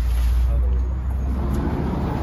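A steady low rumble, with a short knock about one and a half seconds in.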